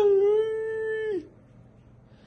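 A person's long, high-pitched wail of pain as icy aloe vera gel is rubbed onto a sunburned leg, held on one steady note and dropping off a little over a second in.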